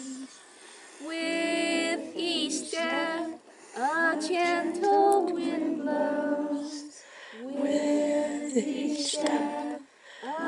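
A woman singing unaccompanied: the slow walking-meditation verse, in long held notes that waver slightly, phrase by phrase with short pauses for breath.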